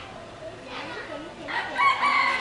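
A rooster crowing. The loud, drawn-out crow begins about one and a half seconds in, over faint background voices.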